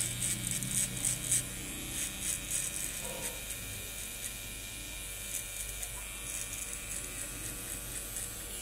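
Electric T-blade hair trimmer buzzing steadily as it cleans up the neckline at the nape.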